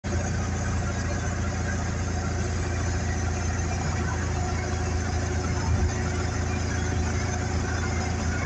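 Steady road and engine noise heard from inside the cabin of a car cruising at highway speed, a constant low rumble with no changes.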